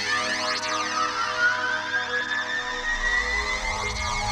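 Electronic R&B track opening on layered synthesizer chords, with a synth tone slowly rising in pitch. A deep bass line comes in about three seconds in.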